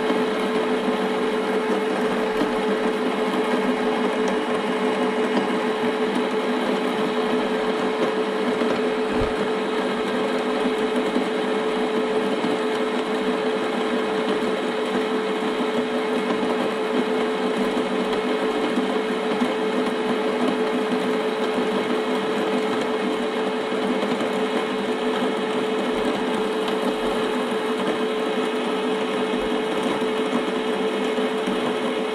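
Wug2-83A coffee grinder's motor running its 83 mm flat burrs at a steady speed of about 360 rpm, a constant whirring hum with a clear steady tone that does not change.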